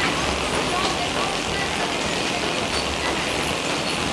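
Vegetable packing-line machinery, including a roller inspection conveyor, running with a steady mechanical noise and a low rumble underneath.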